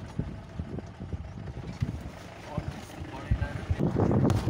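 Cabin noise inside a jeep on a rough dirt road: a steady low engine and road rumble with irregular knocks and rattles as the body jolts over the bumps.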